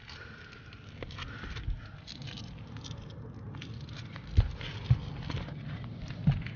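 Shoes stepping and scuffing on gritty asphalt roof shingles: light crackling and ticking throughout, with a couple of soft thumps a little after four and a half and five seconds in.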